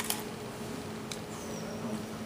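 Quiet room tone: a steady low hum, with a sharp click at the start and a fainter one about a second in.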